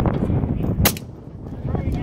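A single precision rifle shot about a second in: one sharp, short crack, over a steady low rumble.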